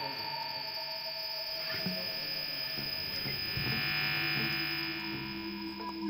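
Steady amplified drone of several held tones, with a high whine that swells up and fades away again about midway.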